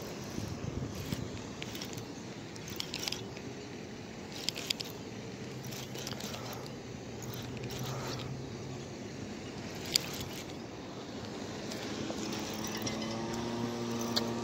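Handling noise: an arm and sleeve rubbing against the camera while the angler reels, with scattered short scrapes and clicks over a steady outdoor hum.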